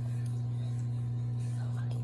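A steady low electrical hum that stays level throughout, with faint breathy voice sounds near the end.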